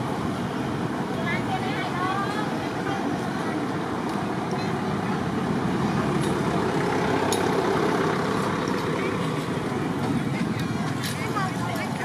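Indistinct people's voices over a steady background noise of outdoor traffic, with a few short clicks.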